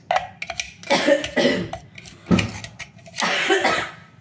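A few light taps on a glass jar, then a person coughing several times in harsh bursts.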